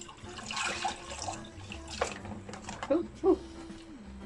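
Liquid soup base pouring from a foil pouch into a saucepan of water, a steady splashing pour in the first half. Then a few sharp knocks as the pouch strikes and slips into the pot, and a brief vocal exclamation near the end.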